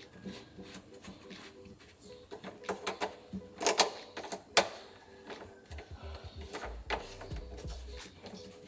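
A sink P-trap being screwed back on by hand: irregular small clicks and scrapes of the pipe and its threaded nut being turned and seated, with two louder knocks about four seconds in and a low handling rumble near the end.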